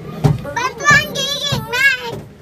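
Young girls' high-pitched voices chattering and calling out, with a wavering, wobbling cry in the second half.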